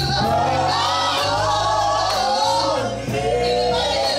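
Live gospel music: a group of women singing together in harmony into microphones, over an electric band with a bass line moving under them.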